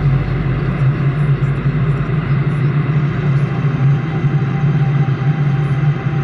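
Steady low drone of a car driving at speed through a long road tunnel, engine and tyre noise.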